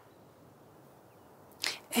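Near silence, then about one and a half seconds in a short, sharp intake of breath just before a woman begins to speak.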